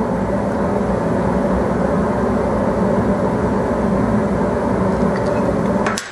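A machine running steadily, a continuous droning hum that cuts off suddenly at the very end.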